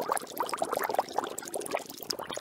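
Water bubbling vigorously: a dense, unbroken run of small bubble pops and gurgles, many with a quick upward chirp.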